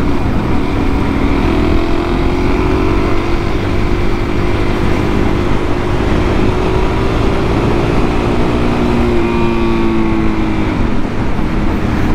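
Suzuki DR-Z400SM's single-cylinder four-stroke engine running under way, its note climbing slowly as the bike gathers speed, then dropping off about ten seconds in as the throttle is rolled off. Heavy wind rush on the microphone runs underneath.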